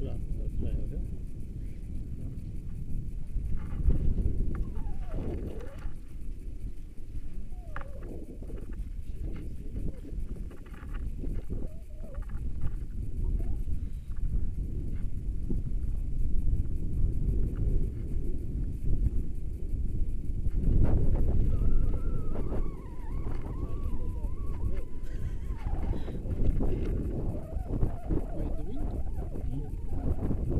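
Wind buffeting the microphone as a steady low rumble, with people talking now and then over it.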